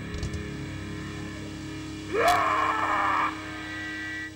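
Electric guitars and bass ringing out on a held final chord at the end of a heavy rock song played live. About two seconds in, a loud high-pitched squeal rises sharply in pitch and lasts about a second before cutting off.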